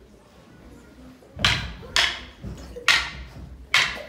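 Purpleheart wooden singlesticks cracking against each other in a sparring exchange: four sharp clacks at uneven intervals, beginning about a second and a half in, each ringing briefly in a large room.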